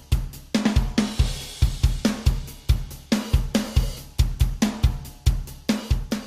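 A recorded drum kit playing a steady beat of kick, snare, hi-hat and cymbals, heard through a multiband compressor. The low band's gain is being raised, so the bass drum comes through heavier and fuller.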